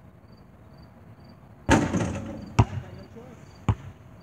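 A missed basketball shot: the ball strikes the hoop with a loud clang that rings on for about a second, then bounces on the asphalt twice, about a second apart. Crickets chirp steadily in the background.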